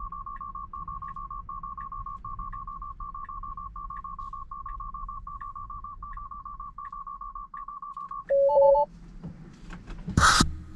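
Tesla Model 3 urgent hands-on-wheel alarm: a high warbling beep repeating about every 0.7 s, sounding because the driver has let the steering-wheel warning go unanswered while Autopilot is engaged. Near the end the beeping stops and a louder, lower two-note chime sounds. Faint tyre and road rumble runs underneath.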